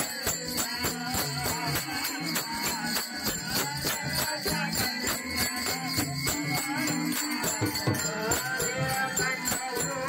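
Live devotional bhajan music: a hand-played two-headed barrel drum with small hand cymbals keeping a steady, driving rhythm, and a voice singing over it.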